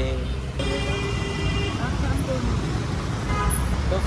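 Dense city road traffic, with engines rumbling steadily. About half a second in, a vehicle horn sounds in one steady blast of about a second.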